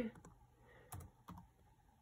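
A few faint, scattered clicks of typing as an equation is keyed into a graphing app on a tablet touchscreen.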